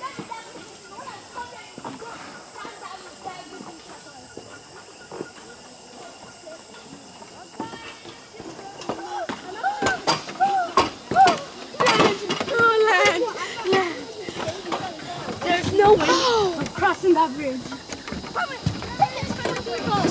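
Indistinct voices of several people talking, faint at first and then louder and busier from about eight seconds in, over a steady high hiss.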